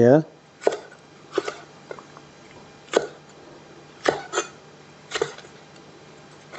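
Kitchen knife slicing red chillies on a wooden chopping board: about seven separate knocks of the blade against the board, unevenly spaced at roughly one a second.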